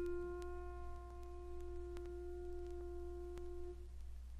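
A single sustained piano note dying away and cut off shortly before the end, the closing note of an art song for baritone and piano. Faint vinyl record crackle and a low steady hum lie underneath.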